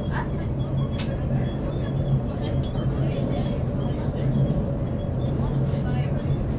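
Steady running noise of a moving commuter train heard from inside the carriage: a low hum and rumble from the wheels and running gear, with a single sharp tick about a second in.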